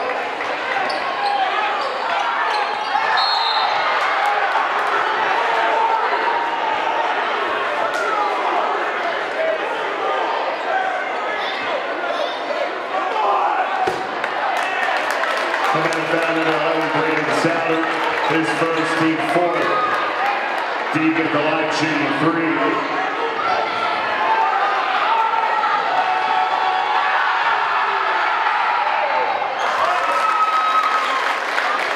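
Crowd chatter echoing in a gymnasium, with a basketball bouncing on the hardwood floor during free throws. In the middle, a low steady tone sounds in several stretches over a few seconds.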